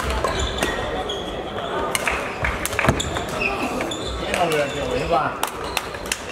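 Badminton racket hits on a shuttlecock and players' footsteps on a sports-hall floor: a string of sharp, irregular impacts echoing in a large hall, with voices in the hall.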